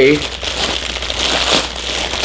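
Plastic mailing bag crinkling and rustling as it is pulled open by hand.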